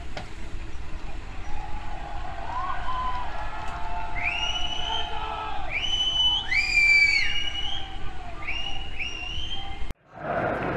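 Several shrill whistles, each sweeping up and then holding briefly, overlapping at different pitches from about four seconds in, over a low hum of vehicle engines and distant voices.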